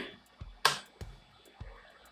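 A few short clicks and light knocks: a toggle switch on a PLC trainer panel flipped on to enable a servo drive, then a hand taking hold of the servo motor. The sharpest click comes about two-thirds of a second in.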